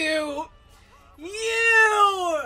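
A person's voice making two drawn-out, high-pitched cries without words: a short falling one at the start, then a longer one of about a second that rises a little, holds and drops away.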